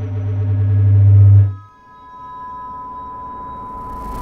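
Electronic outro sting: a swelling synth build-up over a deep bass drone that cuts off about a second and a half in, followed by a steady high electronic tone.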